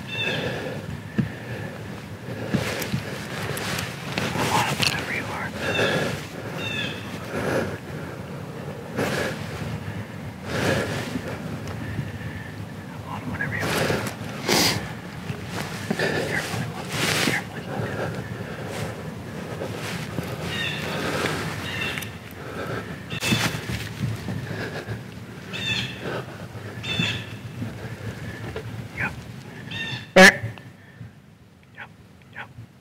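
Irregular crunching and rustling in dry leaf litter as a whitetail buck steps through it, with quiet whispering.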